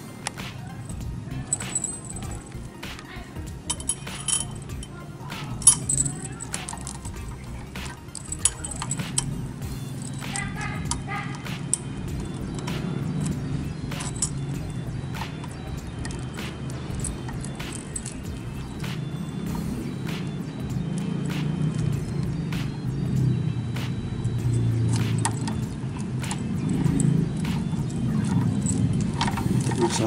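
Metal clinks and rattles from a cut motorcycle chain and padlock being handled and threaded through a front brake disc, with many sharp clicks scattered throughout. Background music plays underneath.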